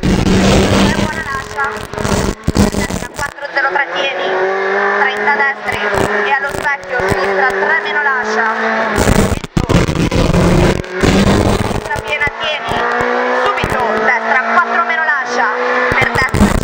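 Renault Clio Williams rally car's 2.0-litre four-cylinder engine heard from inside the cabin under hard driving, climbing in pitch in long rising sweeps as it pulls through the gears. The sound breaks off sharply several times, about two, three, nine and eleven seconds in.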